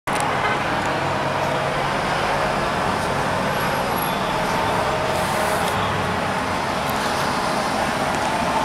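Steady outdoor street noise, like road traffic, with no single clear event standing out.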